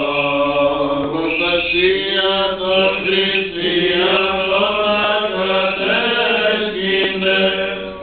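Byzantine chant from an Orthodox liturgy: a melody sung over a steady held drone note (the ison).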